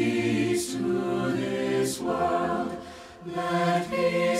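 Mixed SATB choir singing a choral anthem in sustained sung phrases. A brief pause comes near three seconds in, then the voices come back in.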